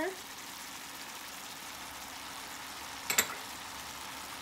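Diced squash frying in oil in a stainless pan, a steady soft sizzle, with a brief clatter a little past three seconds in.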